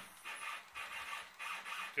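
Stepper motors driving the gantry of a home-built CNC plasma cutting table, whining in a series of short stop-start moves.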